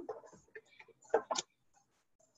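A sheet of paper being folded and creased by hand on a tabletop: a few short, sharp ticks and rustles, the loudest pair just over a second in.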